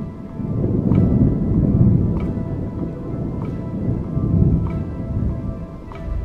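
Thunder rumbling, swelling about a second in and again near four and a half seconds before fading, over background music with a soft tick about every second and a quarter.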